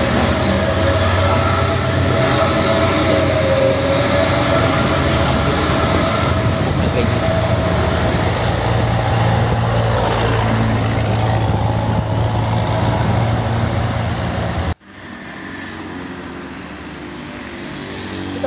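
Heavy diesel dump truck pulling uphill past close by: a loud engine rumble with a steady whine over it. About 15 seconds in it cuts off suddenly to quieter road traffic.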